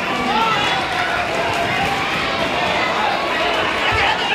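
Spectators and corner coaches shouting over each other throughout a full-contact karate bout, many voices at once, with a dull thump near the end.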